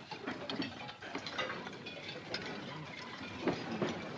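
Tableware clattering at a crowded supper: scattered clinks and knocks of plates, bowls and cutlery, with a low murmur of voices.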